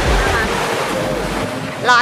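Surf washing on a beach in a strong wind, with wind buffeting the microphone as a low rumble that drops away about one and a half seconds in.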